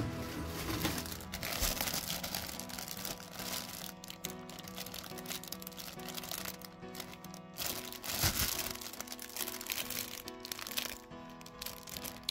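Clear plastic bags crinkling and rustling as bagged plastic model-kit sprues are handled, over background music.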